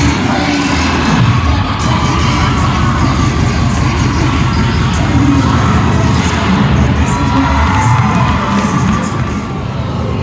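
Loud cheer-routine music played over arena speakers, with a crowd cheering and shouting over it throughout. The sound drops slightly near the end.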